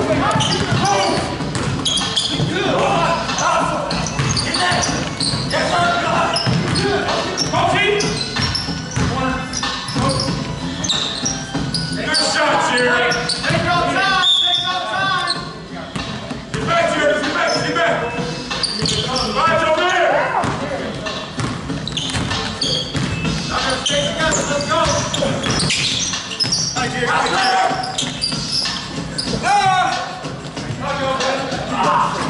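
Basketball being dribbled and bouncing on a hardwood gym floor during play, with players' voices calling out, all echoing in a large gym.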